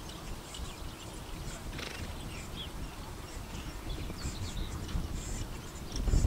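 A single horse trotting on grass while pulling a four-wheeled driving carriage: soft hoofbeats over a steady low rumble.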